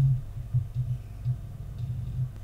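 Quiet room tone with a low, uneven hum. The narrator's voice trails off in the first moment.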